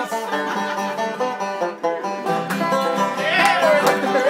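Banjo being picked by hand: a steady, quick run of bright plucked notes.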